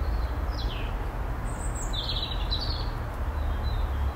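A few short songbird chirps, a falling call about half a second in and a cluster of higher chirps around two seconds, over a steady low rumble.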